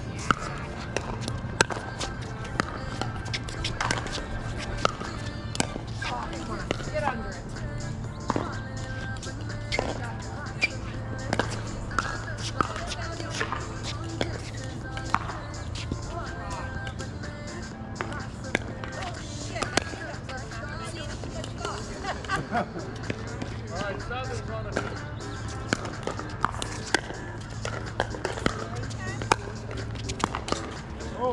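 Pickleball paddles striking plastic pickleballs in rallies on several courts: sharp, irregular pops all through, over a steady low hum. Background music and distant chatter run underneath.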